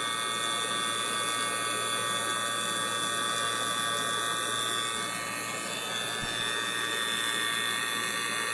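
CPS 4 CFM rotary vacuum pump running steadily, pulling a mini-split line set down to a deep vacuum of around 170 microns.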